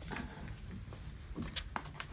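A few light clicks and knocks from a stroller's aluminium frame being handled as it is folded, clustered about one and a half seconds in.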